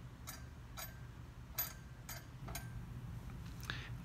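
Faint, irregular clicks of a triple beam balance's front 10-gram rider being slid along its metal beam by a finger, about five in all, the loudest about a second and a half in.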